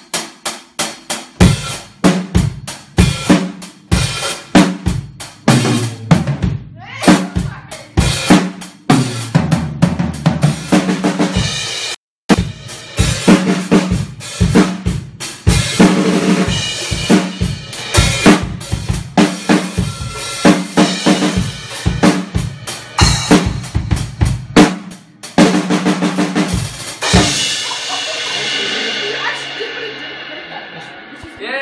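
A drum kit being played: a long run of quick, loud drum hits. The sound cuts out for a moment about twelve seconds in, and the last hit rings out, fading over the final few seconds.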